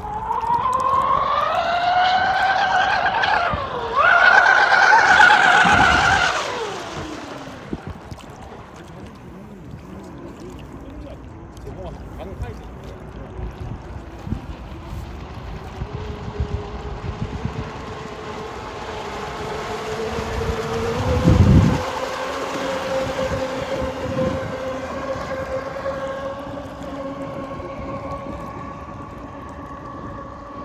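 Twin brushless electric motors of a 24S RC catamaran speedboat whining at high speed. The pitch climbs over the first few seconds, dips briefly, then comes back louder before fading as the boat runs off. Later a fainter, steady whine holds as it keeps running, with a short low thump a little after twenty seconds in.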